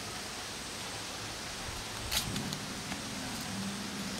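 Steady outdoor background hiss, with one short faint click about two seconds in.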